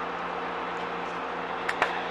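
Gas station fuel pump dispensing gasoline into a vehicle's tank: a steady hum with a rushing hiss of fuel flow, and two short sharp clicks near the end.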